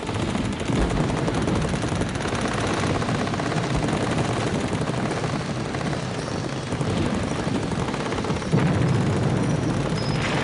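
Battle sound effects: a continuous din of rapid gunfire, with a louder surge about eight and a half seconds in.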